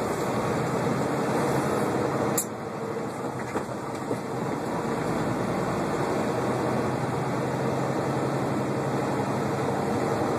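Semi-truck cab interior noise while driving: a steady diesel engine rumble mixed with road noise. There is a sharp click about two and a half seconds in, and the noise dips slightly for a moment after it.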